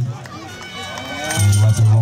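A man's voice calling football play-by-play, drawing out a word in a long held note near the end, with fainter voices from the sideline underneath.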